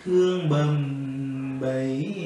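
A man singing a Vietnamese lullaby (hát ru) in slow, drawn-out notes with no clear words. After a brief dip at the start, he holds one long low note from about half a second in, and the pitch rises near the end.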